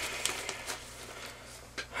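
A plastic zip-top bag full of small homemade aluminum gas checks being handled: faint rustling of the bag with scattered light clicks as the aluminum cups shift inside.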